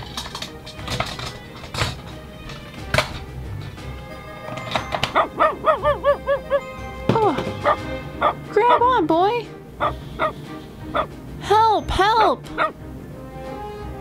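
Hard plastic clicks and snaps of a transforming toy robot in the first few seconds, then a dog barking in several short bursts from about five seconds in.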